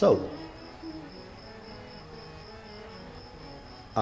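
An insect's high-pitched chirring, a fast and even pulse that goes on steadily.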